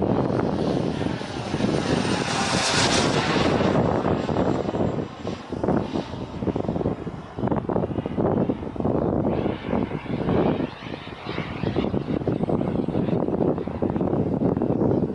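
Jet aircraft flying past overhead: a continuous jet engine rush, with a high whine peaking about two to three seconds in. The sound then rises and falls in level as the aircraft banks and manoeuvres.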